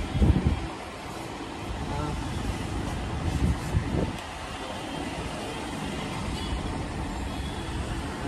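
Steady background noise with indistinct voices and passing road traffic, broken by low thumps as rolls of upholstery material are pulled and handled, the loudest about half a second in and smaller ones around three to four seconds in.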